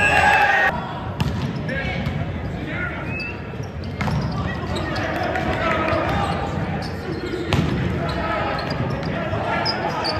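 Volleyball rally heard from the stands of a large hall: several sharp smacks of the ball being served, passed and hit, over steady crowd chatter and shouts.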